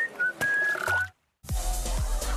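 A short whistled jingle of a few notes, the sound logo closing a TV sponsor spot. It cuts off about a second in, and after a brief silence music starts about a second and a half in.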